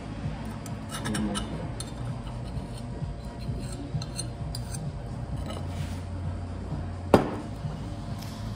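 A small cast-iron skillet pot of baked beans clinks and scrapes lightly against a china plate as the beans are tipped out. One sharp clank near the end is the loudest sound.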